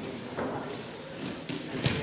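Thuds of body contact from two freestyle wrestlers hand-fighting on the mat: a soft one early on and a sharper, louder one near the end, over a low hall background.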